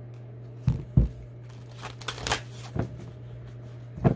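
Tarot cards being handled and shuffled: two knocks about a second in, then rustling card noise, another knock near the end, over a steady low hum.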